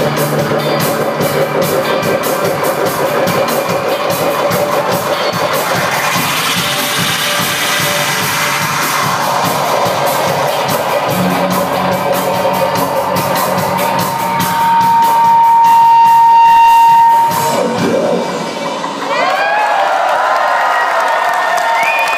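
Live rock band playing the end of a slow song through a club PA, with a fast, steady clicking drum rhythm under sustained guitar and keyboard notes. A loud held note swells about two-thirds of the way through, then the music stops and the crowd cheers and whistles near the end.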